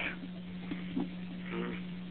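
Recorded telephone line with no one speaking: a steady low hum and line hiss, with a few faint brief sounds in the background.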